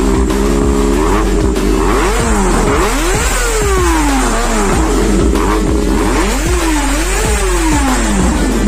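Kawasaki ZX-25R's 250 cc inline-four engine, freshly tuned, running at a steady idle and then revved repeatedly. The pitch climbs and falls in quick blips, the sharpest around the middle and two more near the end.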